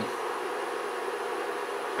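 Induction-heater-driven GEGENE coil setup running under load, giving a steady electrical buzz with a hiss.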